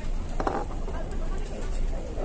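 Fast-food restaurant ambience: other diners' voices in the background over a steady low hum, with one short voice about half a second in.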